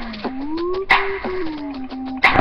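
Instrumental hip-hop beat playing: a low synth melody stepping down and gliding in pitch, with higher sliding tones above it and a sharp percussion hit about a second in, in a loop that repeats every second and a bit.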